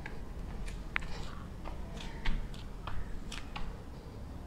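Faint, irregular clicks and soft rustles, about ten of them and a little louder in the second half, from a person's hands and feet shifting on a yoga mat and clothing moving as she steps back into a plank.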